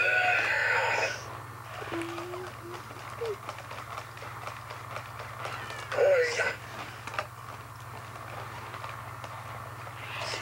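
Motorized toy robot making electronic, voice-like noises: a loud burst in the first second, short beeping tones, and a sliding squawk about six seconds in, over a steady low hum.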